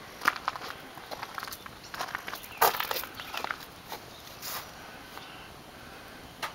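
Footsteps on outdoor ground, an irregular series of short crunches and clicks, the loudest about two and a half seconds in.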